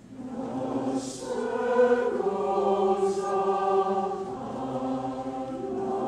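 Mixed choir singing held chords, coming in together right at the start and swelling in loudness, with two crisp sung 's' consonants about one and three seconds in.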